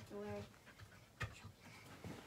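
A large dog panting faintly close to the microphone, with one sharp click about a second in. A child's voice is heard briefly at the start.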